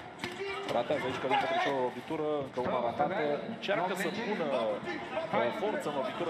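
Voices talking and calling out in the background, quieter than the commentary, with a few sharp clicks.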